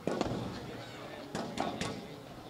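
A padel serve: the ball bounced on the court and struck with the racket, then about a second later a quick run of three more sharp hits of ball on racket and court as the rally gets going.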